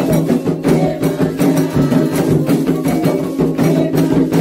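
Candomblé ritual music for Iemanjá's dance (the rum): atabaque hand drums and other percussion playing a dense, continuous rhythm over sustained lower tones.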